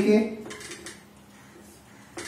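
Marker pen writing on a whiteboard: a few short, faint strokes in the first second and another near the end.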